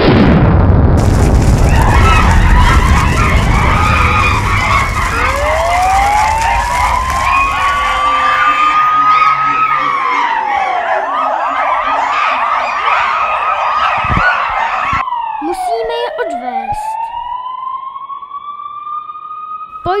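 A police siren sound effect. A wail climbs and then drops away, then from about 15 s several siren tones sweep down and up together as the police vehicle arrives. It opens over a loud rumbling crash noise that fades over the first several seconds.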